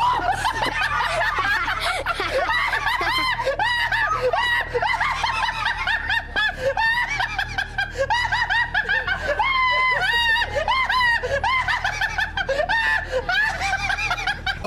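Several people laughing without a break: quick, overlapping rising-and-falling bursts of giggling.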